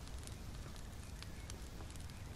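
Wood fire crackling in a fireplace: scattered sharp pops over a low steady rumble.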